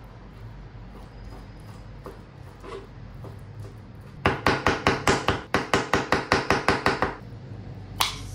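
A knife chopping raw salmon and sea bream into small dice on a plastic cutting board. After a few quiet seconds of slicing, a quick, even run of sharp chops comes in about halfway through, roughly six a second, for about three seconds.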